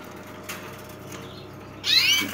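Quiet cage background with a single click about half a second in, and near the end a short rising chirp from a canary.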